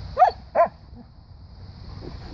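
A standard poodle barking twice, two short barks less than half a second apart.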